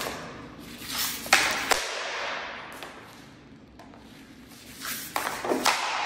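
Hockey stick blade knocking a puck around on a smooth plastic practice floor: a run of sharp clacks and puck scrapes with room echo, then a harder snap of a shot near the end.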